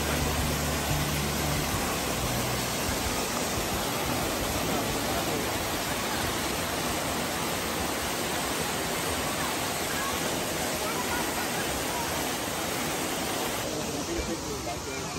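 Waterfall pouring into a pool: a steady, even rush of falling water.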